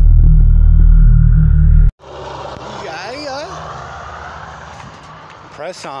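Intro music with a deep bass drone cuts off abruptly about two seconds in. Road traffic noise follows, with a car passing, and a man's voice briefly near the end.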